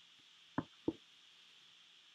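Two short, sharp knocks about a third of a second apart, over a faint steady hiss.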